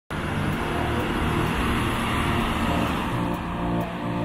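Chevrolet Orlando diesel car driving up a steep street: a steady mix of engine and tyre noise that eases slightly near the end.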